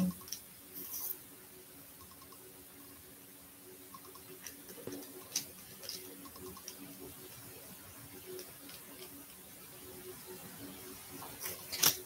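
Quiet room tone: a faint steady low hum, with a short soft hiss about a second in and a few small clicks.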